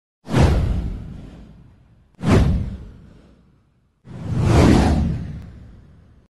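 Three whoosh sound effects about two seconds apart, each hitting suddenly and fading away; the third swells up more gradually and lasts longest.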